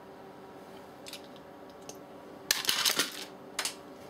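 Small plastic Lego pieces clicking as they are pried apart by hand and mouth. A few faint ticks come first, then a quick cluster of sharper clicks about two and a half seconds in and another click or two near the end.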